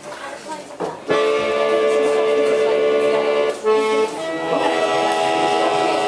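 Piano accordion playing long sustained chords: quiet at first, then a full held chord enters about a second in and changes to another chord a little past the middle.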